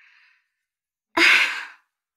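A woman's breathy 'ah', a sigh that starts sharply about a second in and fades away over about half a second.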